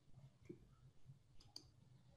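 Near silence with a low hum and a few faint clicks, one about half a second in and a couple more near the middle.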